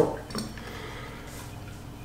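Light handling of a metal carburetor while a spring is taken out: one faint click about half a second in, then quiet room tone.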